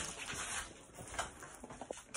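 Faint rustling with a few soft clicks, from a phone handled and pressed against clothing.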